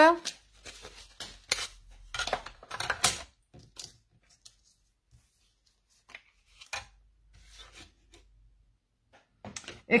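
Clear acrylic cutting plates and a metal cutting die being handled and stacked for a manual die-cutting machine: a few sharp plastic clacks and taps in the first three seconds, then faint handling sounds.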